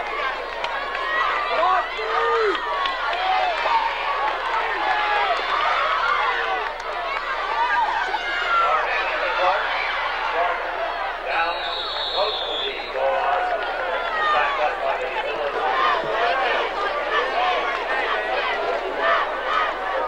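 Football crowd in the stands, many voices shouting and calling out over one another, with a whistle blowing for about a second near the middle.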